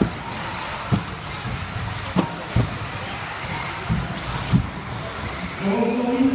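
Radio-controlled 4x4 off-road cars running on an indoor carpet track: a steady whirring hiss from the cars, broken by about five sharp knocks as the cars hit the track and jumps.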